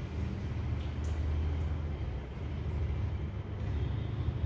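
A steady low rumble of background noise, with no clear events in it.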